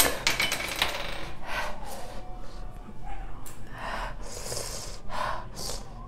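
A brief metallic clatter with ringing right at the start, like something small and metal being knocked or dropped. It is followed by a woman's heavy, pained breathing, several hard breaths and gasps, from the burn of a Carolina Reaper pepper.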